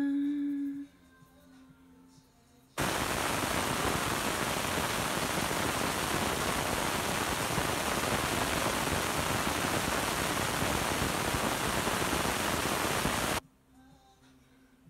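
A steady, even hiss that cuts in sharply about three seconds in and stops just as abruptly near the end.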